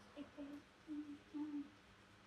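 Soft, low humming from a person: four short hummed notes, each under half a second, the last two the longest.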